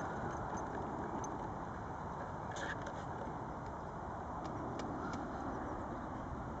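Steady, faint outdoor background noise: an even rumble with a few faint ticks scattered through it.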